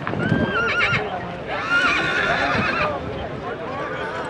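A horse whinnying: a short high call near the start, then a longer, quavering whinny from about one and a half to three seconds in.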